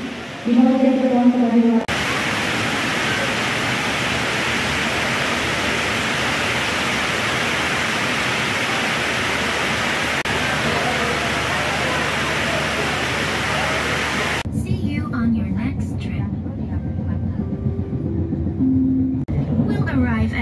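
Railway platform ambience: a moment of voices, then a steady, even rush of crowd and train noise for about twelve seconds. It cuts near the end to the lower rumble of a train carriage in motion, with scattered clicks.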